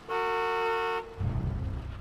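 A car horn sounding one steady honk for about a second, then a low engine rumble.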